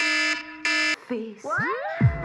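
iPhone alarm sounding: two short, evenly spaced bursts of a buzzy beeping tone in the first second. It stops, and a sung pop vocal with a rising swoop comes in near the end.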